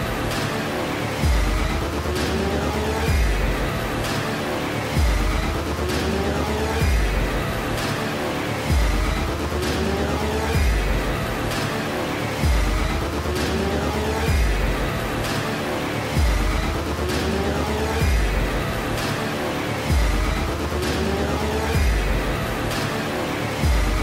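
Background music with a deep bass hit about every two seconds and rising sweeps of pitch in between.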